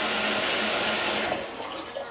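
Water running into a bathtub, a steady hiss that drops away about a second and a half in.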